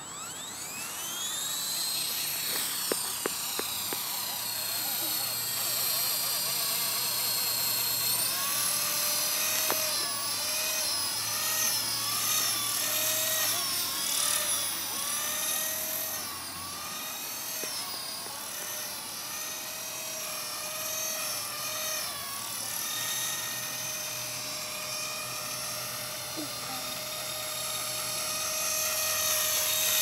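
Blade SR electric RC helicopter in flight, its motor and rotor whine. The whine rises in pitch over the first two seconds as it spools up. It jumps higher about eight seconds in, wavers up and down with the flying, and then holds steady near the end.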